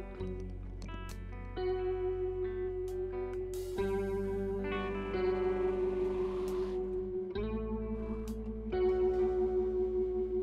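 A live band playing an instrumental passage: electric guitar holding sustained notes over bass, with the drummer playing a kit and cymbal crashes washing in about 4 and 5 seconds in.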